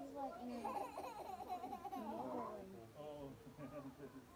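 Background chatter of people, children's voices among them, talking and babbling without clear words, thinning out over the last second or so.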